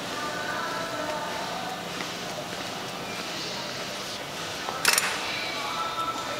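Background hum and faint distant voices of a large, hard-floored airport terminal hall, with a single short, sharp noise about five seconds in.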